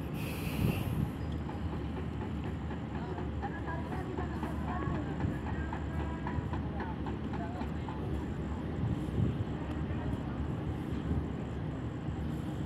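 Diesel engine of a crawler crane running steadily with a low rumble while it lowers a precast concrete bridge girder, with a brief hiss about half a second in. Workers' voices call in the middle.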